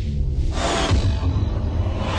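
Dramatic music sting with a deep bass rumble and a swooshing sweep, backing an animated title transition.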